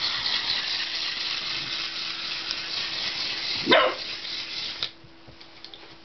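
A wind-up toy's clockwork motor whirring steadily, then stopping abruptly about five seconds in. A dog barks once, sharply, a little before the whirring stops.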